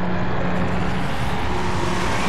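Animated sound effect: a loud, steady, low droning hum under a dense rushing noise. The hum fades after about a second.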